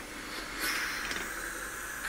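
Steam hissing steadily from the open vent nozzle of a pressure cooker with its weight off, growing a little louder about half a second in.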